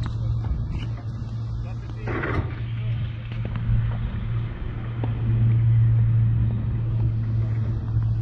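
Steady low rumble of outdoor background noise, with faint voices and a brief louder rush of noise about two seconds in.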